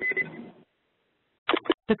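Teleconference line opening with a short, high beep over a crackle lasting about half a second. Near the end, an automated voice begins announcing that the conference has been unmuted.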